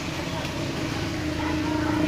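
A motor vehicle's engine running, a steady hum that grows louder toward the end, as if approaching.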